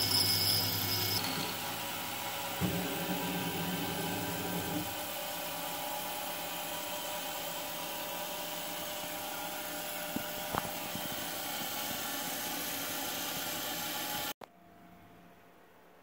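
CNC-converted Precision Matthews PM-25MV benchtop mill slotting a block of plastic: the spindle and end mill run steadily through the cut, with a few faint clicks, and the sound cuts off suddenly near the end, leaving faint room tone.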